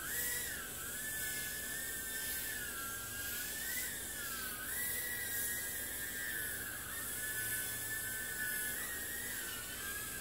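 JJRC H36 micro quadcopter in flight, its four small motors and propellers giving a high-pitched whine that wavers up and down as the throttle and direction change.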